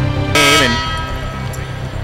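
Broadcast theme music playing, with a short loud burst whose pitch falls about a third of a second in, after which the music carries on more quietly.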